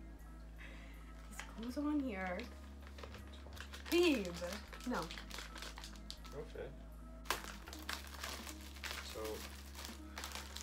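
Clear plastic icing bag crinkling as it is handled and squeezed, densest over the last few seconds, with background music running underneath.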